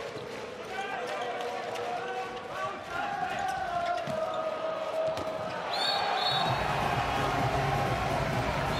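Live arena sound of an indoor handball attack: the ball bouncing and slapping between hands, shoes squeaking on the court, and crowd noise that swells from about six and a half seconds in as the goal goes in.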